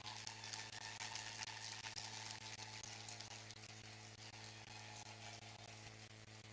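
Faint applause from a gathering of many hands clapping, strongest in the first couple of seconds and then tapering off, over a steady low electrical hum.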